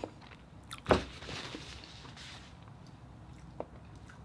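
Close-miked chewing of a mouthful of seafood boil, with one sharp wet smack about a second in and a small tick near the end.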